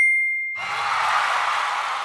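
A bell sound effect struck once, like a boxing-ring bell, ringing out and fading within about half a second. After it comes a steady rushing noise with no clear pitch.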